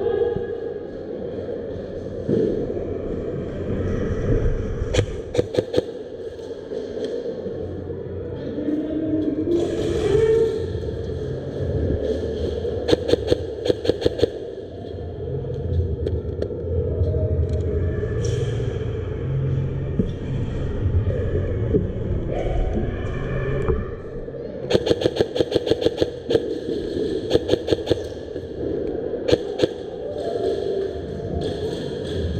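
Airsoft electric guns (AEGs) firing several short bursts of rapid shots, echoing in a hard-walled indoor space, over a steady low rumble.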